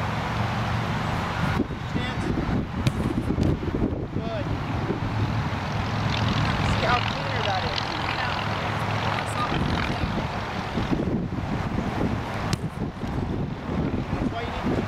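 A steady low engine drone with a constant noisy background, and a few faint voice-like sounds about halfway through.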